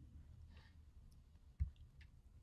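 A single sharp click about one and a half seconds in, heard over a faint steady low hum and a soft breath.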